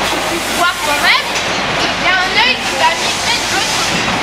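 A woman talking in French over a steady, loud rushing noise that fills a large fish auction hall.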